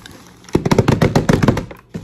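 A rapid run of knocks on a wooden tabletop, like a drumroll, starting about half a second in and stopping suddenly after about a second.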